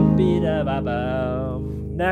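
Music: an acoustic guitar chord ringing and slowly fading, with a held, wavering melody note over it that dies away near the end.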